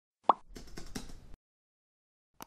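Intro sound effects: a short pop, then about a second of quick keyboard typing clicks over a light hiss that stops abruptly.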